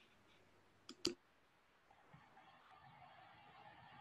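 Near silence, broken by two short, sharp clicks about a second in, with faint background noise after.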